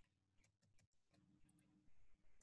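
Near silence with a few faint clicks of computer keys being typed.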